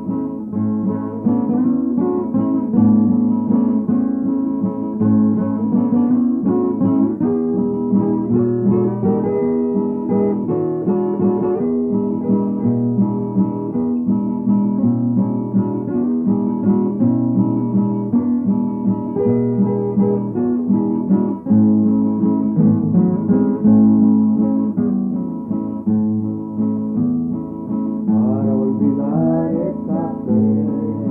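Acoustic guitar playing a strummed and plucked passage of a Hispanic folk song.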